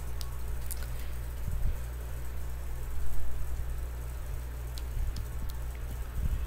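Steady low hum and hiss of room tone, with a few faint clicks and soft low bumps.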